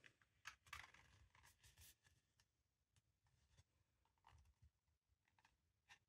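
Near silence, with faint scattered rustles and small clicks of cardstock as a glued strip is folded shut into a tube and pressed closed by hand.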